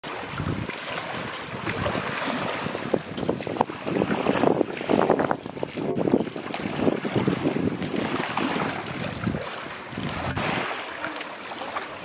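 Water splashing and sloshing as a hippopotamus swims and pushes a large floating object with its head. Irregular, uneven splashing, loudest around the middle.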